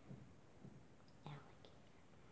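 Near silence: room tone, with one faint, short vocal sound a little over a second in.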